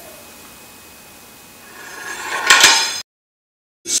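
A metal spoon slides down a tilted oiled-timber board. The scrape builds from about two seconds in and ends in a couple of sharp clinks, then the sound cuts out dead for most of a second.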